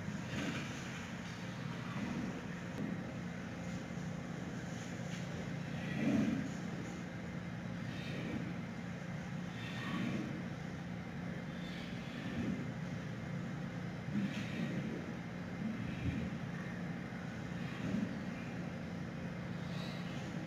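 A steady low mechanical hum in the enclosure, with soft scattered bumps and rustles every second or two as a giant panda mother and her cub wrestle among bamboo stalks.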